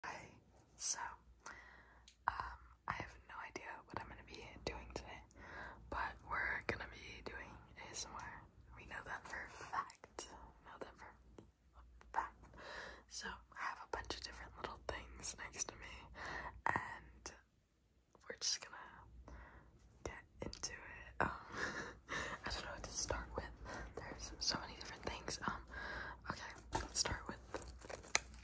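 A woman whispering to the camera, close to the microphone.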